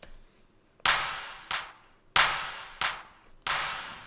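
The reverb return of a drum-machine handclap sent pre-fader to a plate reverb, with the dry clap muted so mostly the reverb is heard. There are five hits roughly two-thirds of a second apart, alternating stronger and weaker, each trailing off in a wash of reverb.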